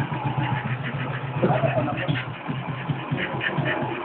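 1957 BSA M21 600cc single-cylinder sidevalve engine idling with a steady, even beat.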